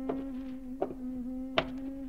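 A steady buzzing drone holding one pitch with a slight waver, crossed by two sharp knocks, the louder one near the end.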